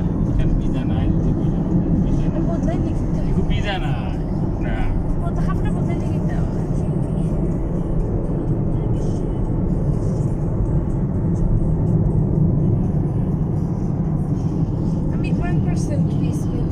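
Steady low rumble of road and engine noise heard inside a moving car at speed, holding at an even level throughout.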